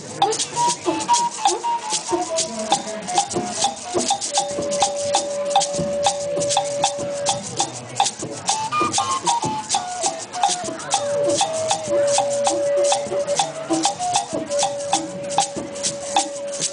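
Live acoustic music: a violin plays a slow melody that steps downward and holds long notes, over a steady shaker rhythm of about four strokes a second.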